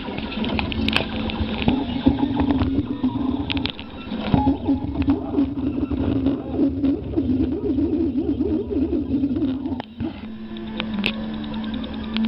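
Stepper motors of a MakerBot 3D printer whining in quickly shifting pitches as the print head moves through its print path, with scattered clicks. Near the end the whine settles into one steady pitch.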